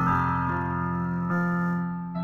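Background music of sustained keyboard chords, changing chord partway through.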